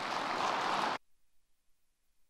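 Audience applauding, cut off abruptly about a second in and followed by near silence.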